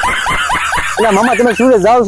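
A high-pitched snickering laugh in quick, short rising yelps, then a wavering voice through the second half.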